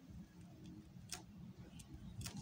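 Faint ticks and light scratches of a pen writing on a paper workbook page, the clearest about a second in, over a faint low hum.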